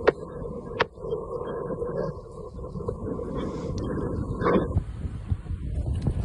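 Road and engine noise of a moving car heard from inside the cabin, a steady low rumble with wind on the phone's microphone. A few sharp clicks stand out, one right at the start, one about a second in and one near four seconds.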